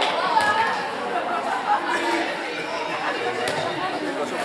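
Overlapping voices of spectators and players chattering and calling out in a large, echoing sports hall, with a couple of sharp knocks.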